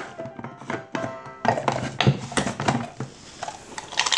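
Irregular knocks and clicks from a small electric food chopper being handled and pulsed with chunks of chocolate inside, over soft background music.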